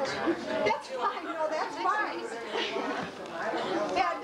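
Several people talking at once in a room: overlapping party chatter with no single voice clear.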